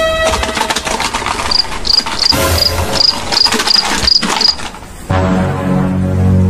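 A cricket chirping: a run of about nine short, high chirps, a few a second, over rapid rattling clicks. About five seconds in, low sustained music chords come in.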